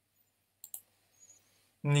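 Two quick, sharp clicks of a computer mouse about two-thirds of a second in, with a couple of fainter ticks a little later, against a quiet small room. A man's voice starts just before the end.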